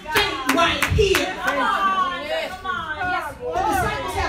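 Hand clapping, about three claps a second, that stops about a second in, followed by a voice over a microphone calling out with no words the recogniser could catch.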